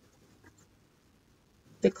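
Faint computer keyboard typing: a few soft key clicks in an otherwise quiet room.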